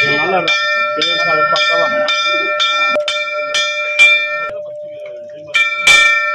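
Large brass temple bell rung by hand, its clapper struck about twice a second so the ring keeps building. The strikes stop about four and a half seconds in and the ring fades away, then the ringing starts again near the end.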